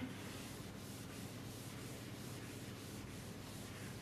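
Felt chalkboard eraser wiping across a chalkboard in repeated faint strokes, a few a second.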